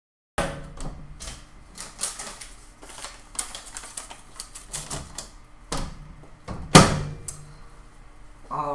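Countertop microwave oven being handled: a run of sharp clicks and clacks as its door is worked and the dried paper is taken out. One loud knock about seven seconds in, as the door is shut.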